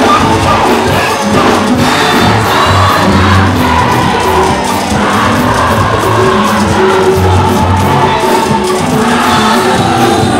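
Live gospel praise music: a lead singer into a microphone backed by a band with electric guitar and drums, with the crowd singing along and cheering.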